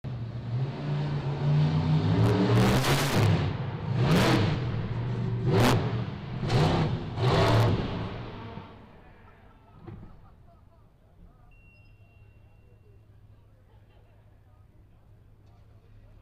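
Monster truck engine revving hard in repeated bursts as the truck climbs and lurches over a ledge. About 8–9 seconds in it drops away to a low, steady idle, with a single faint thump shortly after.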